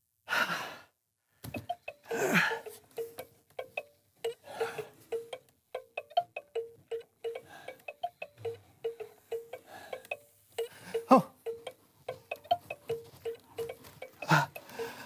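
A steady run of short chiming clicks, about three a second, from a hand crank being turned on a prop treat machine. The man turning it lets out groaning sighs near the start, about two seconds in, and again near the end.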